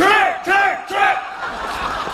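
Three men shouting "吃!" ("eat!") three times in unison, about half a second apart, as a military-style barked command, followed by general crowd noise from the audience.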